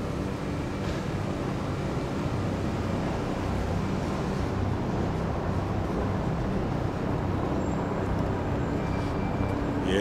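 Steady outdoor background rumble of distant traffic, with a faint low steady hum underneath.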